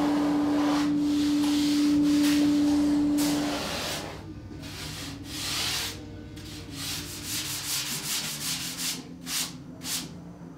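Sanding or rasping on a foam surfboard blank. For the first few seconds a loud steady hum runs under a rushing noise, then separate rasping strokes follow, slow at first and quicker near the end.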